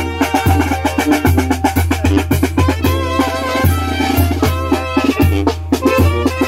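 A tamborazo band playing live: a brass melody over the tambora bass drum, which beats about twice a second, with snare and cymbal strikes.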